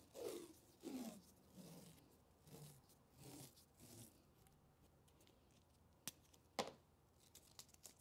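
Adhesive tape pulled off its roll in about six short rasping pulls, each falling in pitch, over the first four seconds. Then two sharp knocks about half a second apart and a few faint ticks as things are set down.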